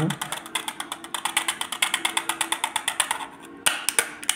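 A steel spoon scraping and clicking against the inside of a thin plastic cup as slaked lime is knocked off it: a rapid, even run of clicks, about ten a second, that stops about three and a half seconds in.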